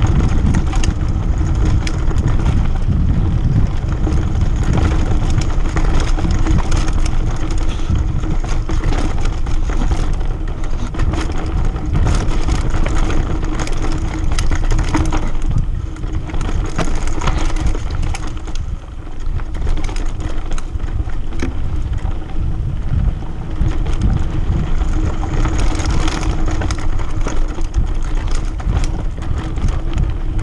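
Mountain bike rolling fast down a dirt and rock trail: tyre noise over the ground and a steady rattle of the bike, under heavy wind rumble on the camera microphone.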